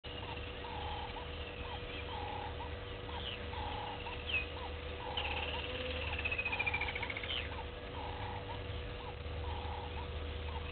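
Repeated calls from small wild animals: a steady series of short calls, about one every second and a half, with higher whistled calls over them, the longest a falling whistle in the middle. A steady faint hum runs underneath.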